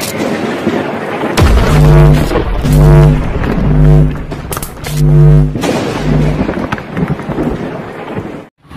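Channel intro music: a noisy rumble that opens into about five heavy, deep synth-bass notes roughly a second apart.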